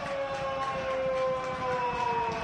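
A single long horn note, held steady while slowly sinking in pitch.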